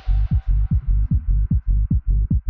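Electronic dance music in a DJ mix: a heavy kick-drum pattern, about four thumps a second, with the highs filtered away so little but the bass is left. Short high percussion ticks start to come in near the end.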